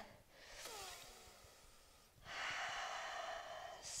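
A woman breathing audibly while holding a yoga pose: a faint breath first, then about two seconds in a louder, steady breath lasting nearly two seconds.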